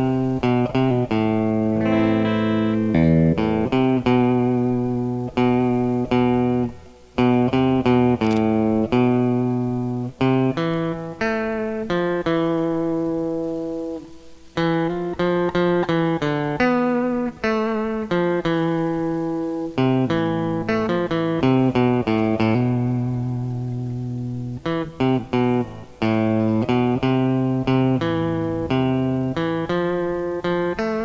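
Mosrite-style electric guitar fitted with a handmade KYO-UP pickup, recorded clean from a Fender amp's line output with no effects, picking a single-note melody with some notes held long. There are short breaks between phrases about 7 and 14 seconds in.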